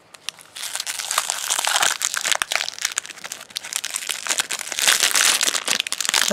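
Crinkly plastic wrapper from an L.O.L. Surprise ball being pulled out of the ball and unwrapped by hand. A dense crackling starts about half a second in and goes on with short pauses.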